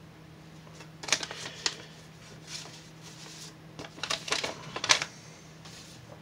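Paper envelope being handled and its contents pulled out: short rustles and crinkles, clustered about a second in and again around four to five seconds in, over a faint steady hum.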